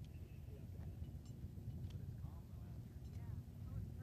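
Low, steady background rumble with faint, indistinct voices in the background.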